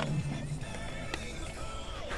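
Music playing from the Panasonic RX-FM14 mini boombox's radio through its small built-in speaker, the set running on its batteries after being unplugged. A sharp click about a second in as the plastic case is handled.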